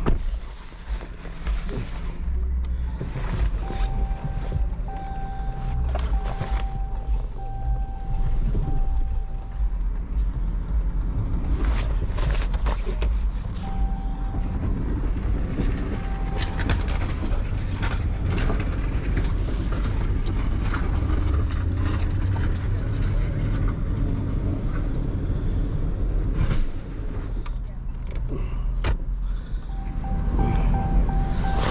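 Crash-damaged car's engine running as the car is moved, a steady low rumble, while a dashboard warning chime beeps on and off in short runs; scattered knocks and clatters.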